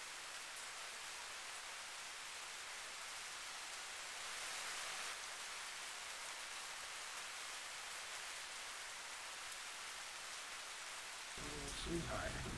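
Faint, steady outdoor hiss with no distinct events. It swells slightly for about a second four seconds in, and a low rumble comes in just before the end.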